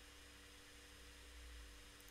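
Near silence: room tone with a faint steady electrical hum and hiss.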